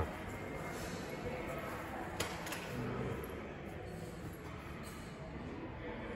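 Room ambience of a large hall with faint distant voices, and two short sharp clicks a little over two seconds in.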